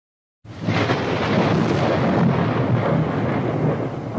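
A dense rumbling sound effect in a channel logo intro. It starts about half a second in, holds steady, and begins to fade near the end.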